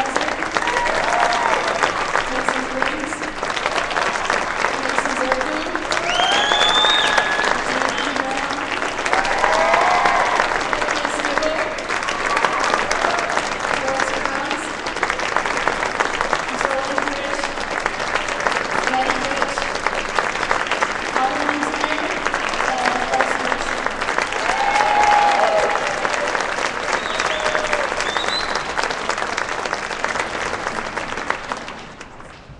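A crowd applauding steadily in a gym, with scattered shouts and whoops from the audience rising over the clapping.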